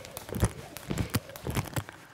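Rope skipping on a hard floor: the jump rope slapping the floor and sneakers landing in a quick rhythm of light impacts, about three or four a second, as the jumper hops from one foot to the other.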